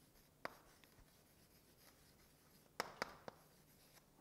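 Chalk writing on a blackboard: a few faint, short taps, one about half a second in and three close together near the end.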